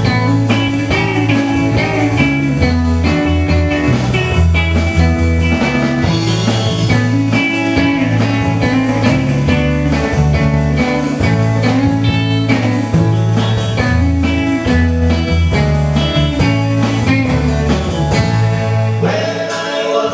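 Live band playing a guitar-led blues-rock song: electric guitars over a bass line and a drum kit. The low bass drops out about a second before the end.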